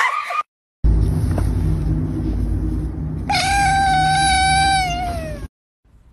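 A cat's long drawn-out meow, about two seconds, holding one pitch and dropping at the end, over a steady low rumble.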